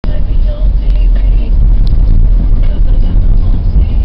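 Steady low rumble of a vehicle heard from inside its cabin.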